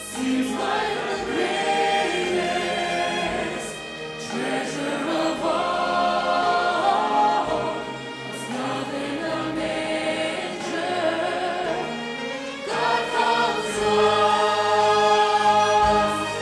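Large mixed choir singing a Christmas anthem with orchestral accompaniment, in long held phrases. It grows louder for the last few seconds.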